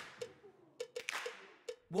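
A few faint, short clicks at uneven intervals, after the tail of a loud musical hit fades out at the start.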